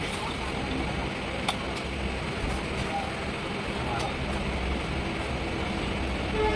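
Steady low rumble of a vehicle in motion, heard from inside it, with a sharp click about a second and a half in.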